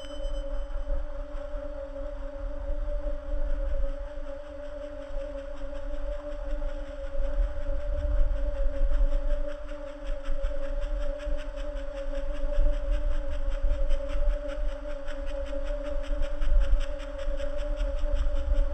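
Ambient drone music: a low and a higher held tone sustain steadily over a deep, uneven rumble. A few high tones die away right at the start.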